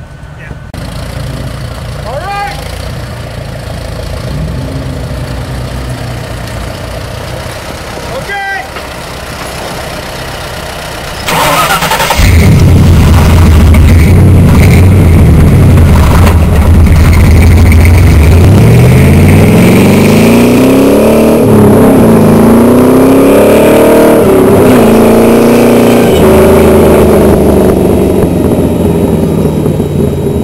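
Off-road 4x4 engine revving hard, very loud, its pitch climbing and dropping repeatedly; it cuts in suddenly about twelve seconds in, after a quieter stretch with two short rising squeaks.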